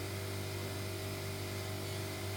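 Steady low hum and even hiss of a running appliance motor.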